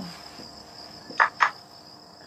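A steady high-pitched whine, with two sharp clicks in quick succession a little over a second in.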